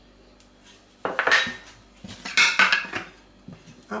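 Glass bowls knocking and clinking against each other and on a tiled worktop in two short clattering bursts, about a second in and again just past two seconds.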